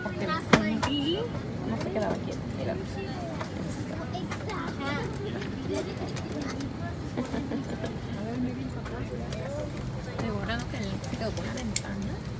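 Scattered voices of passengers talking over the steady low hum of an airliner cabin, with a sharp knock about half a second in and another near the end.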